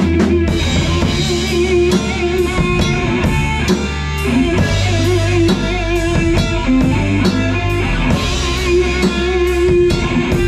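A live rock band playing in a rehearsal room: a drum kit keeps a steady beat under electric guitars and a bass line, with a held melody line that wavers in pitch.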